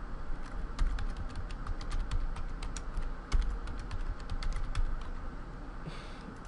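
Computer keyboard being typed on: a run of quick, uneven keystrokes entering a password into both password fields, stopping about five seconds in.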